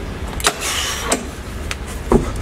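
Live gym sound during a dumbbell bench press: a steady low hum, a brief hissing rush in the middle, and a few sharp clicks and knocks from the dumbbells and bench.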